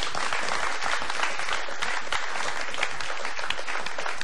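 Studio audience applauding: many people clapping together, steady throughout.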